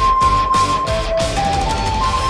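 Recorder playing a pop melody over a backing track with drums and bass. It holds one long high note for about the first second, then moves through a few shorter, lower notes.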